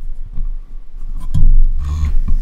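Small handling sounds close to the microphone: light scratching and scattered clicks over a steady low hum, then a heavier low thump about one and a half seconds in.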